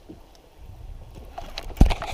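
Low, steady wind and water noise around a small boat, then a sharp handling knock near the end as hands work the baitcasting reel and lure close to the camera.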